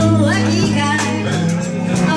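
Live band playing, with bass guitar and drums under a sung vocal line that glides up in pitch about half a second in.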